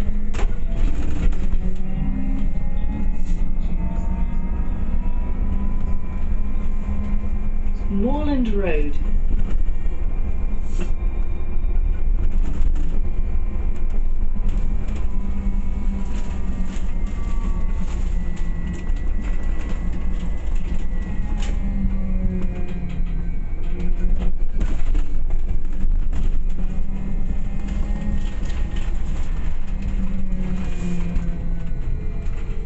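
A single-deck city bus driving, heard from inside the cabin: a steady low rumble with a drive whine that rises in pitch as it gathers speed near the start and falls again as it slows later on. A brief rising-and-falling squeal sounds about eight seconds in.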